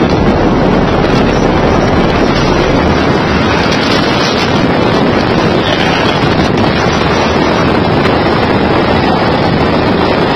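Steady, loud wind rush over the microphone and road noise from a truck cab moving at highway speed.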